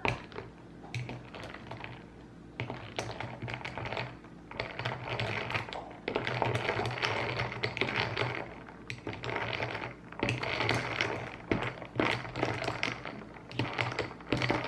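A straw stirring a drink in a tall glass, knocking and clinking rapidly against the glass in spells of a second or two at a time.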